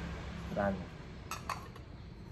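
Two quick, ringing clinks of old blue-and-white porcelain plates knocking against each other as one is set down, about a second and a half in.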